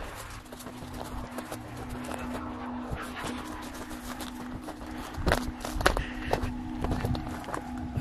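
Footsteps on a dirt farm track and young corn leaves brushing and rustling, with a few louder rustles or knocks past the middle, over a steady low hum.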